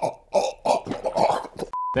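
An indistinct voice, then near the end a short single-pitch bleep about a quarter second long, cut in sharply like a censor bleep over a word.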